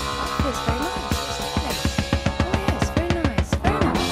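Rock band recording led by a drum kit playing a busy fill of tom, snare and bass drum strokes with cymbals. The strokes quicken into a rapid run in the second half, over held notes from the other instruments.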